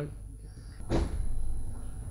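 A sudden knock about a second in, followed by a low rumble of handling noise on a microphone.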